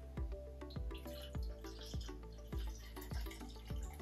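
Background music with a steady beat, under the faint sound of carbonated hard cider being poured from a glass bottle into a glass mug.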